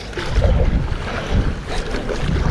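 Wind buffeting the microphone in uneven low rumbles, over water splashing and lapping around an inflatable stand-up paddleboard as it is paddled.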